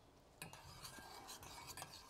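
A metal spoon stirring melting clarified butter in a small stainless-steel saucepan: faint scraping with light clinks against the pan, starting about half a second in. The butter is being warmed gently, not fried.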